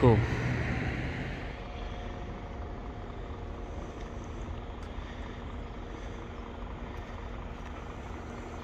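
Steady low rumble of distant road traffic, easing slightly over the first couple of seconds.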